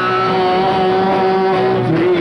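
Live rock band playing, with a single note held steady for almost two seconds that bends near the end.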